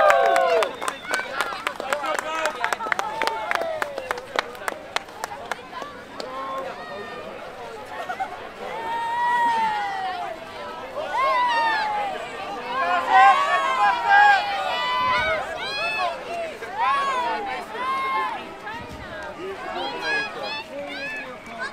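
Passing parade group shouting and calling out in high voices, short cheers one after another. Over the first few seconds a quick run of hand claps.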